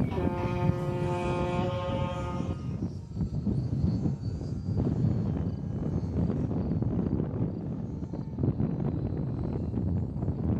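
Electric motors and propellers of radio-controlled model gliders whining at one steady pitch for about two and a half seconds as they climb under power, then stopping. Wind rumbles on the microphone throughout.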